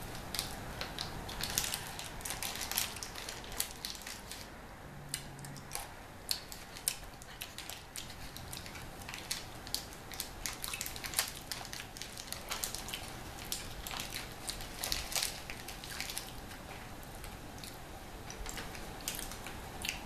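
Close-miked crunching and chewing of candy-coated peanut M&M's, with irregular crisp cracks throughout and the crinkle of the candy's wrapper being handled.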